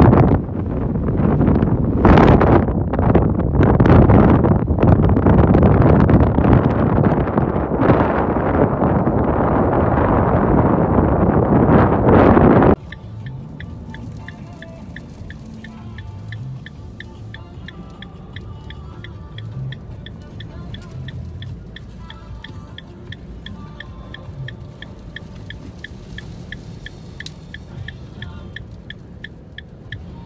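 Sandstorm wind buffeting a phone microphone, a loud gusty roar, cut off suddenly about 13 seconds in. It gives way to the much quieter inside of a car: a low hum with faint music and a steady ticking about twice a second.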